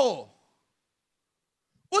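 A man's voice draws out its last word on a falling pitch, then near silence for about a second and a half.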